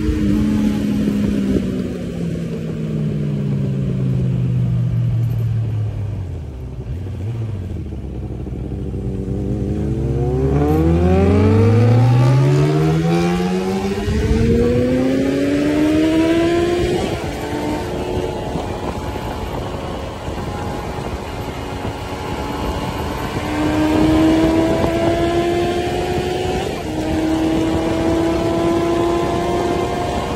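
Suzuki Bandit inline-four motorcycle engine heard from the rider's seat: the revs fall away over the first several seconds, then climb steadily from about ten seconds in. It then holds high revs with slow rises and a gear change near the end.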